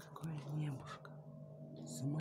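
A person's quiet, low murmuring voice with no clear words, over a faint steady hum and a few light clicks.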